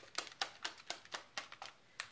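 Plastic shaker bottle of kefir, matcha and protein powder being shaken hard, the contents knocking back and forth in an even rhythm of about four strokes a second that stops shortly before the end.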